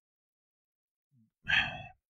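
Silence, then about one and a half seconds in a man takes a short audible breath, a sigh, before he speaks.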